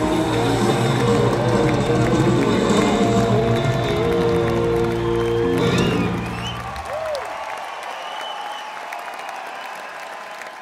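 A live rock band holds its final chord, which cuts off about six seconds in, and the arena audience breaks into applause and cheering with a few whistles. The applause slowly dies down toward the end.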